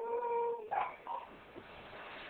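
A baby's long, steady, pitched vocal tone, held for a couple of seconds and breaking off less than a second in, followed by a couple of short, softer sounds.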